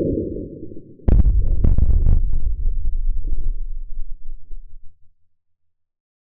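Slowed-down crash of many small magnetic balls. A deep rumble dies away, then about a second in comes a heavy thud and a dense clatter of clicks that thins out and stops about five seconds in.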